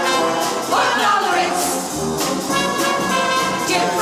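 Mixed choir of men and women singing sustained chords in harmony, with instrumental accompaniment.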